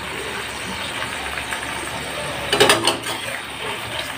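Sausages frying in bubbling fat in an aluminium wok, a steady sizzle as the water added to cook them boils off and they begin to fry in their own rendered fat. About two and a half seconds in, a metal spatula clinks and scrapes against the pan several times.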